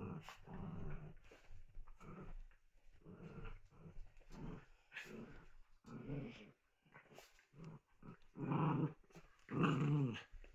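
Small dogs growling in play while they wrestle, a string of short growls with the loudest about 8.5 seconds in and at the end. It is play-fighting, not aggression.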